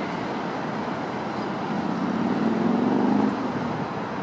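City road traffic running steadily, with a vehicle engine swelling louder about two seconds in and falling away suddenly just after three seconds.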